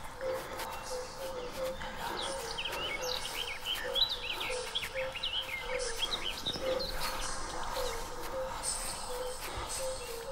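Forest ambience of many birds chirping in short rapid calls, thickest from about two to seven seconds in, over a low note that blips a couple of times a second.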